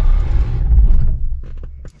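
Old Mercedes-Benz engine running, heard from inside the cab, then dying away about halfway through as it is switched off, with a few faint clicks near the end.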